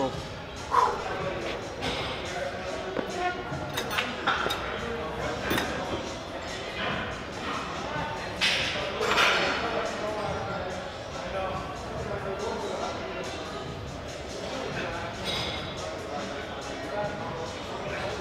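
Busy gym room sound: background voices and music in a large hall, with a few scattered knocks.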